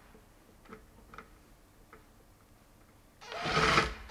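A few faint clicks, then a cordless impact gun runs in one short burst of under a second about three seconds in, spinning off the pump's impeller nut.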